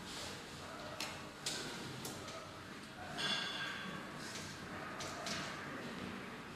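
Hands handling optical fibre and a plastic splice protection sleeve: a few soft clicks and rustles, with a louder scratchy rustle a little past halfway.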